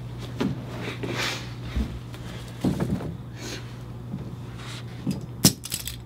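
Scattered rustles, scrapes and knocks of people moving and handling things on a stage, over a steady low hum, with a sharp click near the end.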